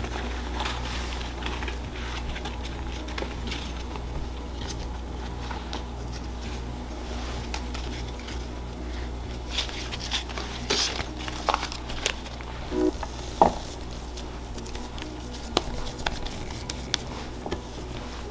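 Corn husks rustling and crackling as they are handled on a wooden cutting board, with scattered light clicks, busiest in the second half. A steady low hum runs underneath.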